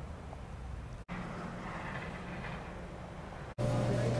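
Steady vehicle and road noise with a low hum, cut off abruptly about a second in and picking up again. Near the end it gives way to a louder, steady electrical hum.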